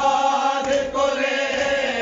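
Men's voices chanting an Urdu noha, a Shia mourning lament, in long held notes that step from one pitch to the next.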